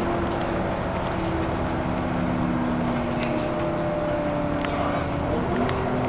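Passenger cabin of a moving vehicle: steady rumble of the drive and road, with a few humming tones that shift in pitch about five seconds in.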